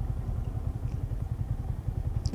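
Yamaha motorcycle engine running steadily as the bike rolls slowly over sandy ground: a fast, even low pulsing.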